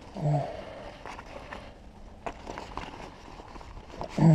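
Nylon front pack being handled: soft fabric rustle with a few light clicks from its strap hardware.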